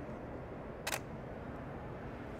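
A single DSLR shutter click about a second in, from a Canon EOS-1D X Mark II firing one frame.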